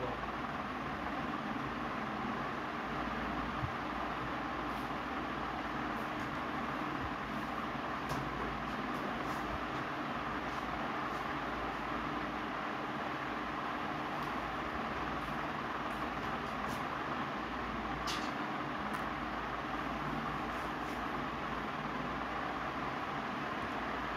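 Steady background hum and hiss with a few faint clicks.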